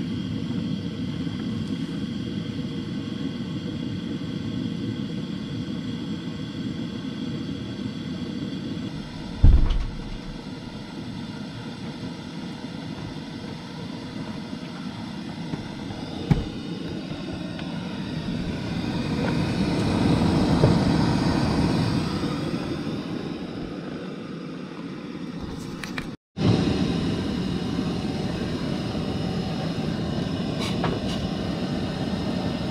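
A steady low outdoor rumble with two short knocks, one about a third of the way in and one just past halfway. A louder rumble then swells and fades, and the sound drops out for a moment near the end.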